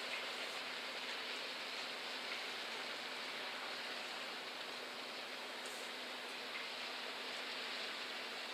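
Steady, even hiss of distant outdoor ambience with a faint low hum underneath.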